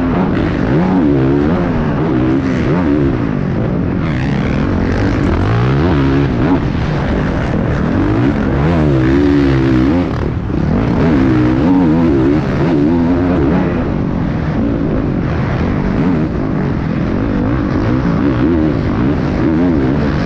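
Motocross bike engine heard from on the bike, revving hard and easing off again and again as it is raced, its pitch climbing and falling with the throttle and gear changes.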